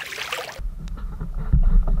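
A pike strikes a lure at the surface with a short, hissing splash of water. A low, heavy rumble follows, buffeting the microphone and growing loudest near the end before cutting off abruptly.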